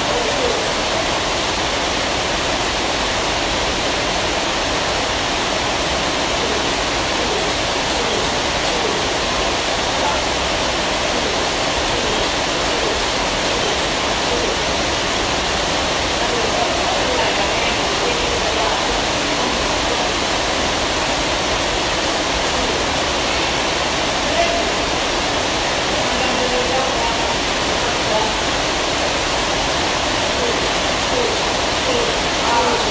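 A steady, loud rushing noise with faint voices beneath it.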